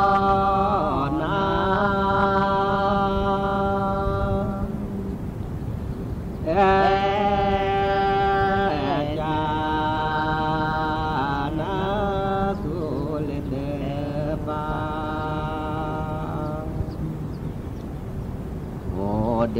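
A voice chanting in long, steady held notes of a few seconds each, sliding between pitches and pausing briefly between phrases.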